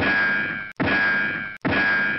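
Three identical metallic clang sound effects, about 0.8 s apart, each ringing and then cut off abruptly, marking lines of headline text popping onto the screen.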